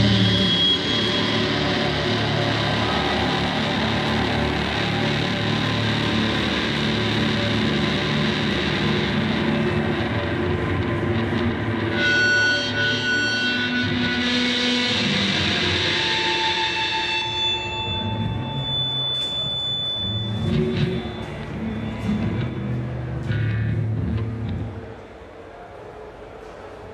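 Live rock band's electric guitars and bass sustaining a dense wash of distorted noise with no vocals. In the second half single steady high tones are held for a couple of seconds at a time. It dies down about a second before the end.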